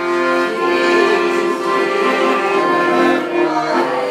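Piano accordion playing sustained chords with a moving melody line, notes held and changing steadily.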